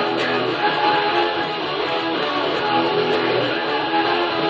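Jackson electric guitar playing a rock riff along with a rock backing track that has drums and cymbals.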